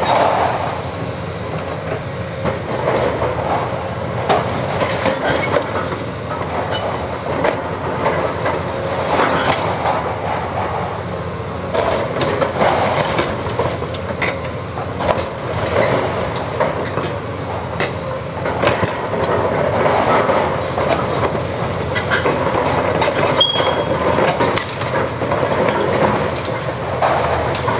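Caterpillar 329E hydraulic excavator demolishing a concrete-block wall: the diesel engine running under load, with a steady clatter of breaking blocks, falling rubble and knocks of the demolition attachment against the structure.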